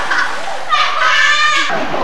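Young girls' voices shouting and squealing in play, with one long high-pitched call about a second in.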